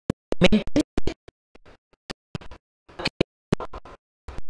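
A woman's speech into a handheld microphone, chopped into short stuttering fragments with dead silence between them: the audio stream is dropping out, so no words come through whole.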